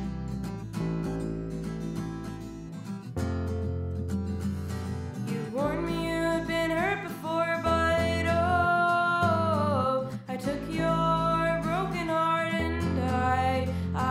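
Song played on a strummed acoustic guitar, with a sung melody coming in about halfway through and holding long notes.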